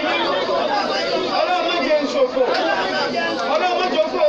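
A man speaking Yoruba without pause into a handheld microphone, delivering an Islamic prayer or sermon.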